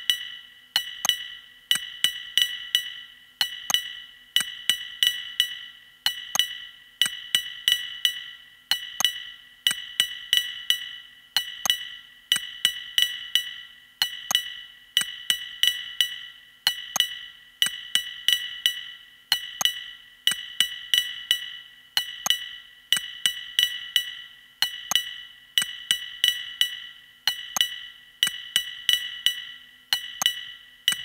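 Electronic music: a repeating rhythm of short, sharp percussion hits, each ringing at two high pitches, in quick groups with nothing heavy underneath.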